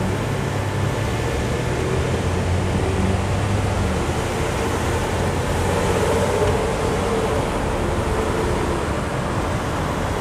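City street traffic: a steady wash of vehicle engine and road noise, with a low engine drone in the first few seconds and a higher engine note around the middle.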